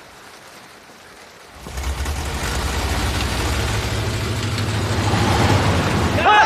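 A car engine starting up about a second and a half in and running with a steady low rumble that grows gradually louder. Light rain hiss before it starts.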